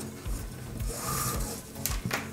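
Nylon paracord sliding through a tight bracelet weave: a soft rubbing hiss of cord dragging against cord about a second in, then a short click near the end.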